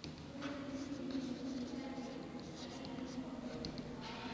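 Chalk writing on a blackboard: a run of short scratchy strokes as figures are written one after another.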